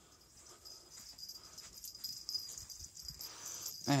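Two small dogs scampering and scuffling on carpet during a play chase: faint rustling and a few soft thumps that grow louder toward the end.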